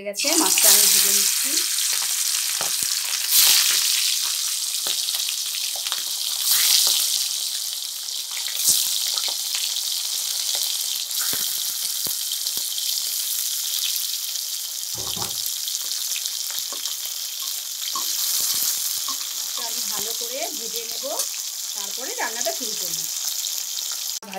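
Turmeric-coated fish pieces frying in hot oil in an aluminium kadai: a steady high sizzle, surging louder a few times in the first nine seconds.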